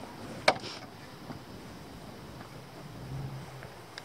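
Quiet outdoor background with a single sharp click about half a second in, and a faint low hum near the end.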